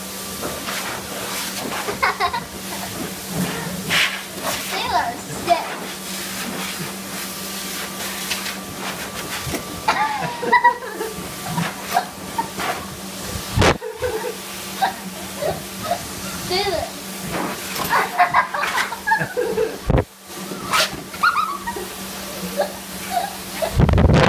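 Handheld dog-wash blow dryer running, a steady rush of air over a low motor hum, held at a dog's face. Voice-like sounds come and go over it.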